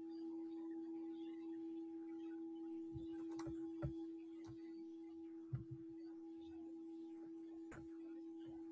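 A faint steady hum on one pitch, with a few soft clicks scattered through it.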